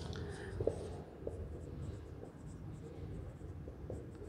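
Marker pen writing on a whiteboard: faint strokes and small taps as an arrow and a word are written.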